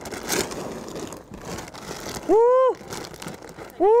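A man calling cattle with short, loud "woo!" calls, each rising and falling in pitch, twice: about two and a half seconds in and again at the end. Before the first call there is a steady rustling and crunching of a feed sack and feed being poured into a feed bunk.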